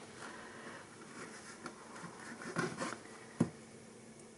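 Faint handling noise of aluminum craft wire being twisted together by hand: light scrapes and rustles, with one short sharp click about three and a half seconds in.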